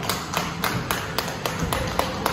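Roller coaster train rolling slowly through an indoor section, with a steady clicking about four times a second over a low rumble.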